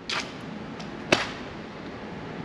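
Steady outdoor background hiss in a pause between words, with a short soft rush of air near the start and a single sharp click about a second in.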